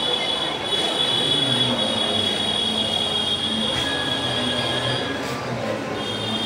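A steady high-pitched squeal, several close tones held together, over background chatter; it stops about five seconds in.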